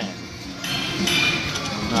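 China Shores video slot machine spinning its reels, with electronic chimes ringing as the reels come to a stop.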